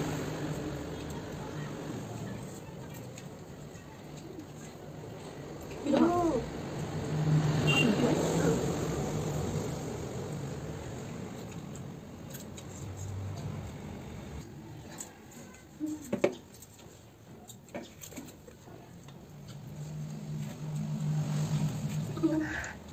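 Two people slurping and chewing noodles, with a wordless gliding vocal sound about six seconds in and a few sharp clicks, like chopsticks on steel plates, around sixteen seconds in.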